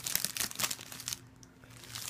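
Plastic wrapping crinkling and DVD cases being handled, in a run of quick crackles through the first second, quieter in the middle, with a few more near the end.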